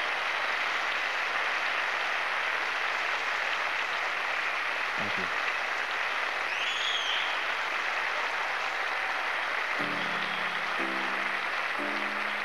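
Large studio audience applauding steadily, with one short high whistle about halfway through. About ten seconds in, sustained chords of the next song start under the applause.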